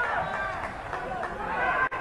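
Football match ambience: distant voices calling out around the pitch, with a short break in the sound just before the end.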